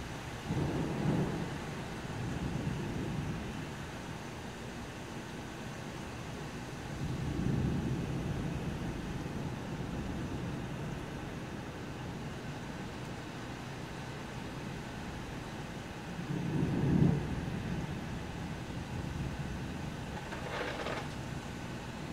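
Steady rain from a thunderstorm, with thunder rumbling three times, about a second in, at about seven seconds and loudest at about seventeen seconds.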